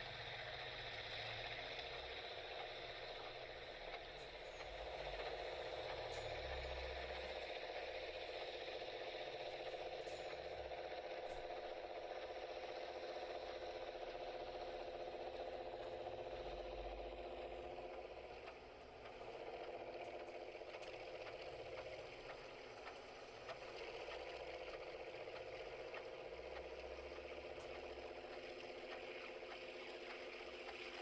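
Railway rotary snowplow and the locomotives pushing it, running steadily as the rotor clears the line and throws snow: a steady engine drone with rattle over a hiss of blown snow, easing briefly about two-thirds of the way through.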